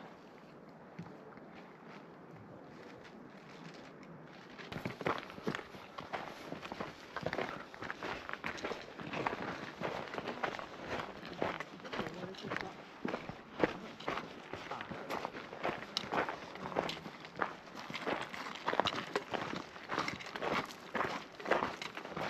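Footsteps on a loose gravel and rock trail at a steady walking pace, starting about five seconds in after a faint hiss.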